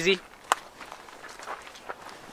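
Footsteps of a person walking, with one sharp tap about half a second in and fainter steps after it.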